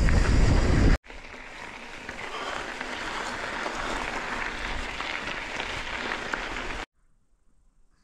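Wind buffeting the microphone with a heavy low rumble, cut off abruptly about a second in. Then mountain bike tyres crunching and crackling over a loose, gravelly dirt trail, with small rattles, for about six seconds, cutting off abruptly near the end.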